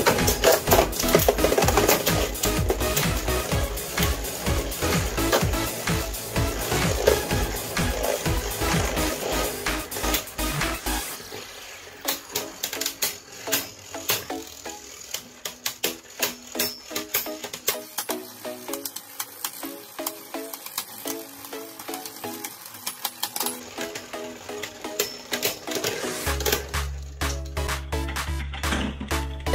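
Two Beyblade spinning tops whirring and clashing in a plastic stadium: rapid clicks and clacks as they strike each other and the wall, dense for about the first ten seconds, then sparser as the tops slow down. Background music with a beat plays underneath and grows louder again near the end.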